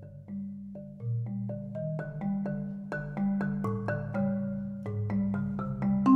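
Concert marimba improvising: low bass notes ring and change about once a second under a quicker stream of mallet strikes higher up, growing louder across the passage.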